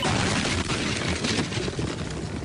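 A dense, rapid crackle of sharp percussive hits with no clear melody, fading near the end.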